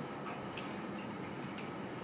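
A pause with low room noise and a couple of faint, sharp ticks about a second apart.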